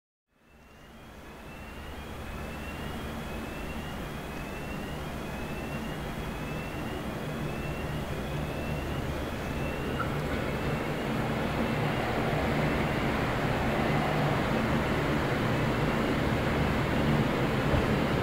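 V/Line VLocity diesel multiple unit approaching, its diesel engines humming steadily and growing gradually louder as it nears. A short high rising chirp repeats about once a second through the first half.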